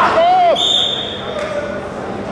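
A referee's whistle blows once: a single steady high note lasting just under a second, starting about half a second in, right after a shouted voice.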